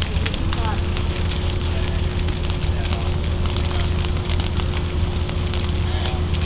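Dry prairie grass burning in a prescribed fire: dense, irregular crackling over a steady low rumble. A faint steady hum sets in just after the start.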